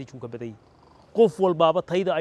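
A man speaking Somali in an interview, with a brief pause about halfway through.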